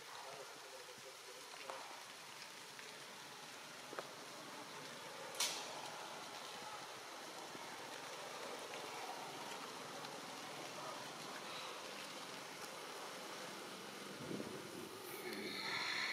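Faint, steady outdoor background hiss with a few scattered light clicks, one sharper click about five seconds in, and a brief higher-pitched sound near the end.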